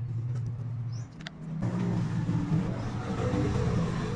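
A low motor hum, steady at first, then louder and rougher from about one and a half seconds in.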